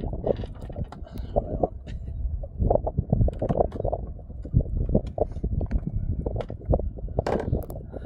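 Wind buffeting the phone's microphone in a steady rumble, with irregular knocks and rustles as the phone and clothing are handled.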